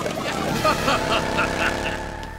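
Cartoon sound effect of a motorcycle engine running steadily, with short voice-like sounds over it.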